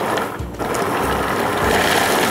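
Food processor running, its blade grinding a mixture of nuts and oat porridge mix into a protein-bar dough. The motor noise is steady and loud, with a short dip about half a second in.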